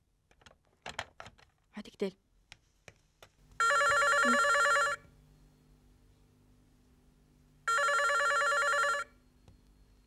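Push-button desk telephone ringing twice, each ring about a second and a half long, the two rings some three seconds apart.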